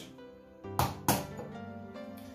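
Background music with steady sustained tones, and two sharp taps about a second in, half a second apart: an egg being knocked against the rim of a glass to crack it.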